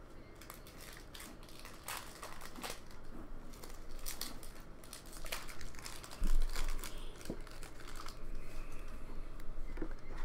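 Foil wrapper of a hockey trading card pack crinkling and tearing as it is torn open by hand, with scattered crackles. A dull thump about six seconds in is the loudest sound.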